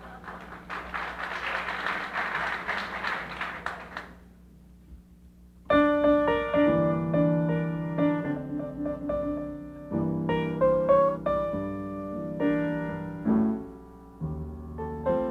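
Audience clapping for about four seconds, then a short lull. Then a grand piano comes in with a loud chord and goes on playing chords and single-note runs.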